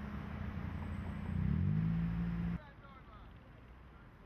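A car driving past close by, its engine hum rising in pitch and growing louder about one and a half seconds in, then cut off abruptly a second later, leaving a much quieter background.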